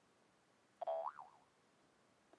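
A single short electronic alert sound about a second in: a brief buzzy tone followed by a pitch that swoops up and down, lasting about half a second.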